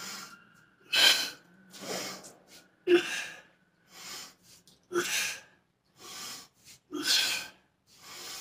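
A man breathing hard and forcefully through dumbbell reps with both arms: loud, sharp breaths about every two seconds, with fainter breaths in between.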